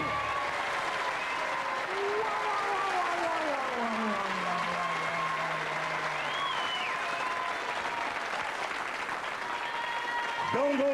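Studio audience applauding, with a faint tone sliding slowly down in pitch over the applause in the middle.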